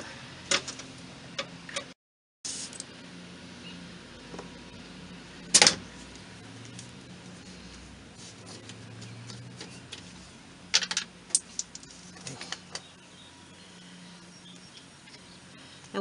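Air chuck on a compressor hose being pushed onto the valve of a truck's air suspension bag: light metal clicks, then short bursts of escaping air, one sharp one about a third of the way in and several more at about two-thirds, as the chuck is hard to seat.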